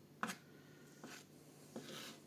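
A kitchen knife knocks once sharply on a plastic cutting board, then scrapes faintly across it near the end as the blade pushes diced boiled carrots together.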